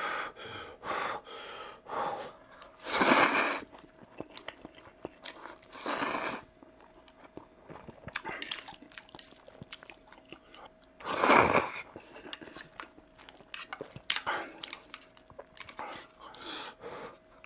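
A man slurping ramen noodles and chewing close to the microphone: several loud slurps, the loudest about eleven seconds in, with soft wet chewing and smacking between them.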